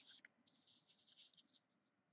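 Faint pencil strokes scratching on drawing paper for about a second, after a light tap at the start.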